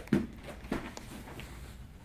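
Soft thumps and shuffles of a child doing a forward roll on a folding foam gymnastics mat, the loudest a brief thump just after the start, then a few faint bumps.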